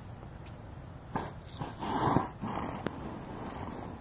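A horse snorting: short, noisy breaths blown through the nostrils about one and two seconds in, the one around two seconds the loudest.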